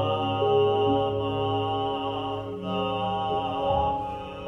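Buddhist sutra chanted in long held tones by a Jōdo Shinshu priest, laid over ambient background music, the pitch shifting a few times.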